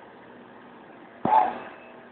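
Deckel Maho DMP 60S CNC machining center running steadily inside its enclosure with coolant spraying. About a second in there is one sharp clank that rings briefly and is the loudest thing here.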